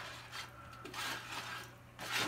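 Wooden stir stick stirring a pot of hot dye bath: faint, irregular swishes of liquid and wood rubbing against the aluminium stockpot.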